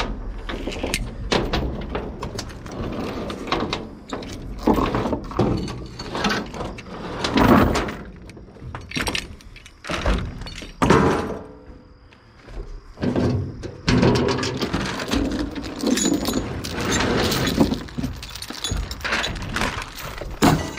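Irregular metal clanks, knocks and rattles as a trailer's hand-crank winch, its steel cable and chain are handled and loose metal gear is moved about.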